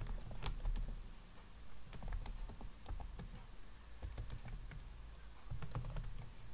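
Computer keyboard typing: quiet separate key clicks at an uneven, unhurried pace of about three keystrokes a second as a terminal command is entered.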